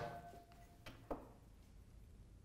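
Quiet kitchen with a short ringing note from a struck ceramic bowl that fades within the first second, then a couple of faint taps from hands working in the bowl.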